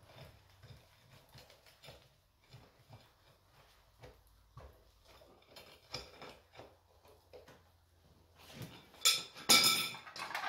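Faint scattered knocks, then near the end a few loud metallic clanks with a brief ringing tone: steel foundry tongs and rod striking metal as the crucible of molten cast iron is handled out of the furnace.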